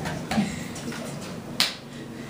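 A sharp finger snap about one and a half seconds in, with fainter clicks before it, over a low murmur.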